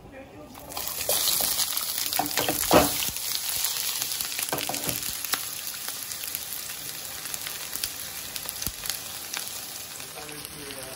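Onion wedges hit hot oil in a skillet with dried chiles and set off a loud sizzle about half a second in. A few knocks follow as the pieces land and shift, the loudest near three seconds in, and then the frying sizzle slowly settles.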